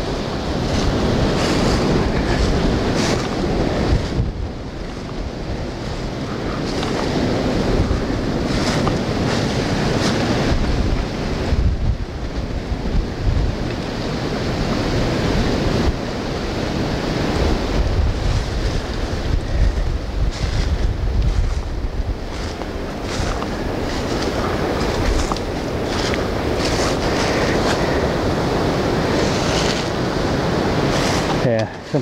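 Wind buffeting the camera microphone with a low rumble, mixed with the irregular rustle and crunch of footsteps through dry fallen leaves.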